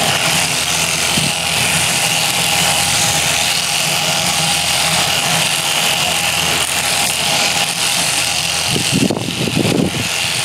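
Electric sheep-shearing handpiece on a flexible drive shaft, running steadily as its comb and cutter cut through the sheep's fleece.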